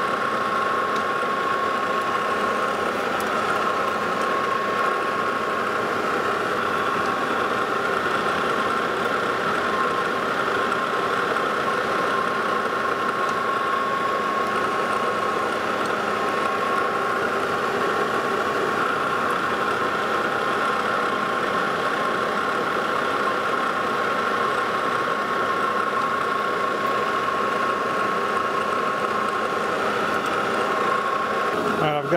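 Lodge and Shipley manual metal lathe running under power while single-point threading 8 threads per inch on a high-carbon steel bolt: a steady mechanical running noise with a constant high whine.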